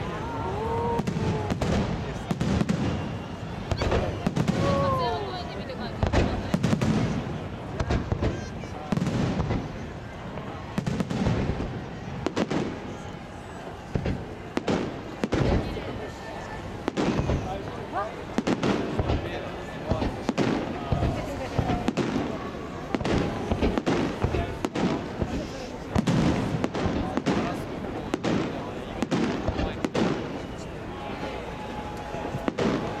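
Fireworks display: aerial shells bursting in a dense, irregular run of bangs, with louder bursts every few seconds, over the voices of people in the crowd.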